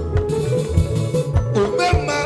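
Live band music with plucked guitar lines over a strong bass line and a steady drum beat, played loud through a PA.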